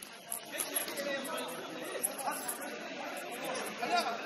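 Indistinct voices of several players calling and chatting across a large indoor futsal hall, with a few sharp knocks in between.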